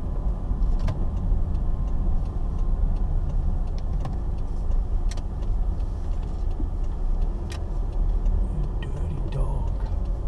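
A car's engine and road noise heard from inside the cabin while driving, a steady low rumble with a few light clicks and rattles scattered through it.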